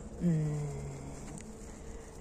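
A woman's drawn-out hesitation hum, "mmm", held for about a second and sinking slightly in pitch as it fades.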